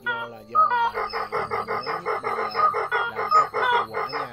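Recorded white-breasted waterhen calls, a playback lure track: a few rising calls, then from about a second in a fast, even run of repeated notes, several a second, with music mixed in underneath.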